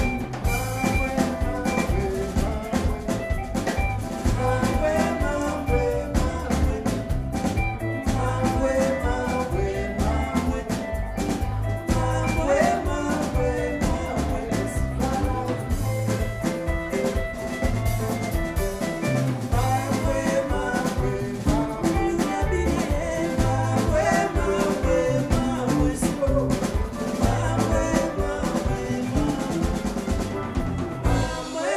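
Live band music: drum kit, electric guitars and bass guitar playing a steady, upbeat groove, with vocals.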